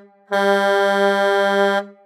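Horn-like sound effect in a logo sting: a short blast, then a longer held blast of one steady tone that cuts off sharply near the end.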